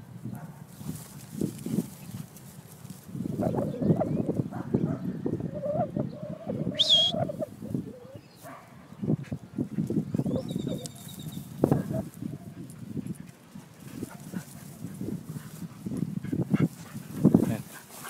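Dogs fetching a thrown rock on grass: irregular bursts of low noise, with a brief pitched call about seven seconds in.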